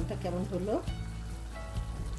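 A thick dried-fish and jackfruit-seed curry simmering with a soft sizzle in a pan on the hob. A voice speaks over it during the first second, with background music throughout.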